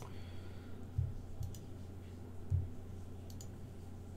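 Faint computer mouse clicks, one about a second and a half in and a couple more past three seconds, over a steady low hum, with two soft low thumps.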